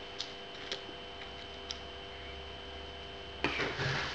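Quiet room with a steady electrical hum and a few faint ticks, then about three and a half seconds in, hands begin shuffling and rustling items on a wooden tabletop.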